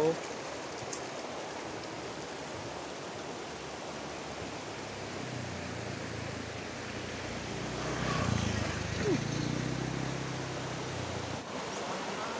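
Steady rushing of a shallow, rocky river. About halfway through, a low rumble joins it, grows louder, then cuts off just before the end.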